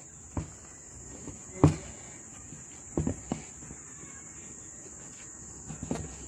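Several short, sharp cracks and knocks as the heel of a knife levers apart the two halves of a stingless bee hive box at its join; the loudest is about a second and a half in. A steady high-pitched insect chirr carries on in the background.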